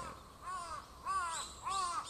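A bird calling over and over: three short arching calls, evenly spaced a little over half a second apart.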